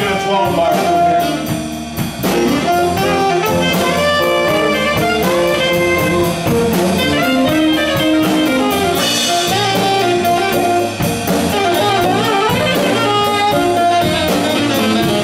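Live blues band playing an instrumental break: a saxophone plays a solo line over drum kit, electric guitar and bass guitar.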